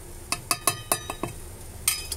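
Steel spoon and small steel bowl clinking as powder is tapped and scraped out into a steel mixer jar: a quick run of ringing metallic clinks, then one more near the end.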